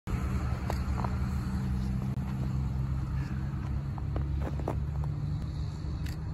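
A steady low engine rumble, with a few faint short clicks over it.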